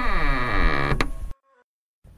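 Closing sound of the podcast's intro jingle: a loud pitched tone with many overtones gliding downward for just over a second, then cutting off suddenly into silence.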